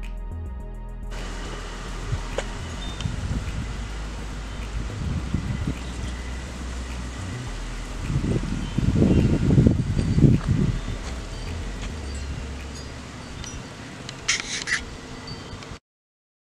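Background music that stops about a second in, then outdoor ambient noise with irregular low rumbling, loudest a little past the middle, and a brief high hiss near the end.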